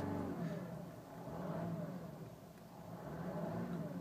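2012 Mercedes E350 Bluetec's 3.0-litre V6 turbodiesel heard from inside the closed cabin, revved twice while parked, its faint note rising and falling each time. The diesel sound is very slight, well muffled from the cabin.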